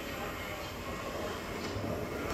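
A steady, noisy murmur from a television broadcast of a parliamentary assembly session, played through the TV's speakers into the room, with no clear words.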